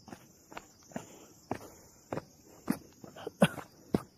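Footsteps walking on a path of stone steps, about two steps a second, each a short tap or scuff of a shoe on stone and grit.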